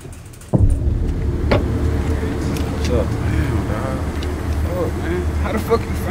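Car engine idling: a steady low rumble that starts suddenly about half a second in, with low voices over it.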